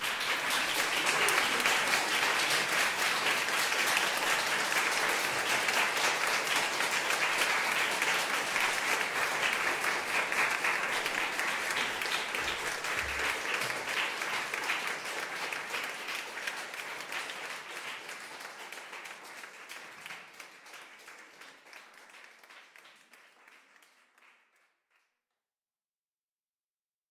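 Audience applauding, starting suddenly, then gradually dying away over the last ten seconds or so and stopping shortly before the end.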